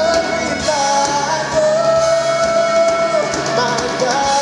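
Live rock worship band playing with electric guitars, drums and keyboard, a singer carrying the melody and holding one long note through the middle.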